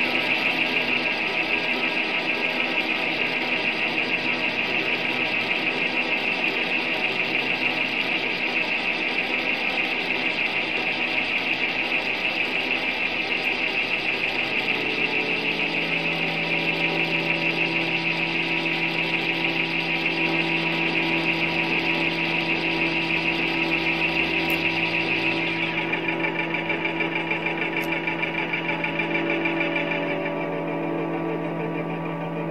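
Live ambient drone from an effects-pedal and loop rig: a dense, steady wall of sustained tones with a bright hiss on top. About halfway in, two new low held tones come in and stay, and near the end the highest layer drops away.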